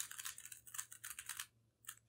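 Plastic layers of a stickerless 3x3 Rubik's cube clicking faintly as they are turned in quick succession through the parity algorithm. The clicks stop about a second and a half in, and one more comes near the end.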